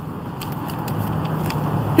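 Road traffic going by: a car's engine and tyres, a steady low hum growing slowly louder, with light rustling of paper being handled.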